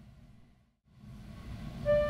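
Low sound of an Estey two-manual and pedal reed organ fading out to a brief silence just under a second in. A low hum then comes back, and near the end the reed organ sounds a loud held chord of several steady tones.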